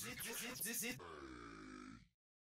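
The tail of a podcast outro jingle: a quick run of about six short voice sounds in the first second, then a fading ring that cuts off abruptly at the very end.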